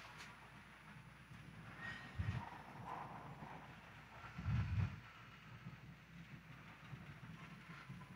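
Faint room sound of a large church during communion: a low rumble that swells softly twice, with faint distant murmurs.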